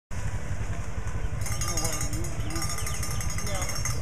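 Distant voices over a steady low rumble.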